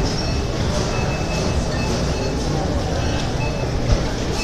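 Steady low rumbling noise over the general hubbub of a busy supermarket, with a few faint steady tones in the background.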